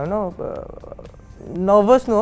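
A voice singing in long held notes. It breaks off just after the start, gives a short rough vocal sound, and takes up a new sung phrase near the end.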